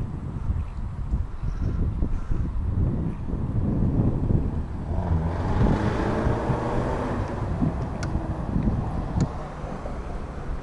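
Wind rumbling and buffeting on the microphone in an open boat, with a broader rush of noise about halfway through.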